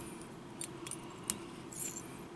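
Faint, scattered light metallic clicks and ticks from a whip-finish tool and tying thread as a whip finish is wrapped behind a fly's bead head. The loudest tick comes about a second and a half in.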